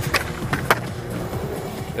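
Skateboard on concrete: wheels rolling, with two sharp clacks of the board about half a second apart, the second louder, over background music.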